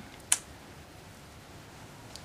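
A single short click about a third of a second in, over quiet room tone.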